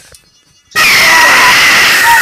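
Toy sonic screwdriver's electronic sound effect switching on about three-quarters of a second in: a sudden, loud, steady high buzzing tone with hiss. It follows a few faint rustles and knocks.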